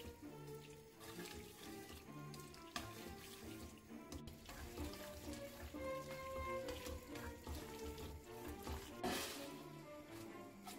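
Wet spaghetti in its cooking liquid being stirred with tongs and tossed in an aluminium frying pan, sloshing quietly under soft background music, with a louder rush of noise about nine seconds in.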